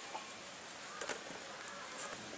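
A faint insect buzz, like a fly, over steady outdoor background hiss, with a light knock about a second in.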